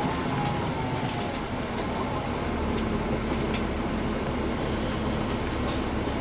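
Cabin sound of a NABI transit bus with a Cummins ISL9 inline-six diesel, running as the bus slows and draws up to a stop, with a faint falling whine early on and a few short interior rattles. A hiss sets in near the end as it comes to a halt.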